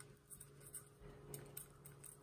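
Near silence with a scatter of faint small ticks and scratches: a plastic spoon nudging coarse salt crystals about on freezer paper lining a soap mold.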